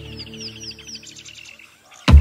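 A small bird chirping in a quick series of short, falling notes, about five a second, which stop about one and a half seconds in. Soft background music fades out beneath it.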